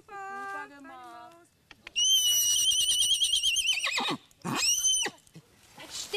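Mini Shetland pony whinnying: a long, high, wavering call about two seconds in that drops away at its end, then a shorter call that rises and falls.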